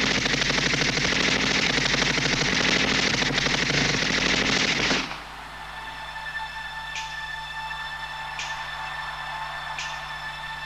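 Staged machine-gun fire sound effect over the concert PA: a rapid, unbroken burst that cuts off suddenly about five seconds in. It is followed by a quieter held synthesizer tone with a soft swish about every second and a half.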